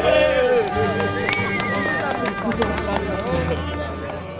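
Several people's voices talking and calling out over music, with scattered clicks and knocks, fading out near the end.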